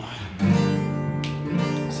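Acoustic guitar strummed: a chord comes in about half a second in and is left to ring.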